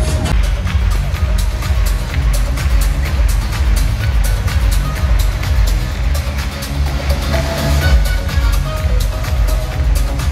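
Electronic dance backing track with a heavy, steady beat played loud over an arena PA system, heard from the crowd with booming bass.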